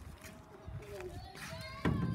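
Faint background voices talking, with a short bump near the end.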